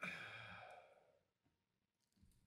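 A short, faint breathy sigh-like exhale that starts suddenly and fades out within about a second.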